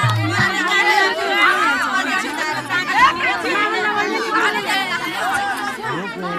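Many people talking over one another, several voices at once. A madal drum's last beats stop about half a second in.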